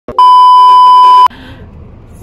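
A TV colour-bar test tone: one loud, steady, high beep lasting about a second that cuts off suddenly, followed by faint background noise.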